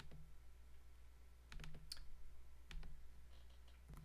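Faint clicks of a computer mouse and keyboard, in small groups: one near the start, a few a little over one and a half seconds in, and a couple near three seconds, over a steady low hum.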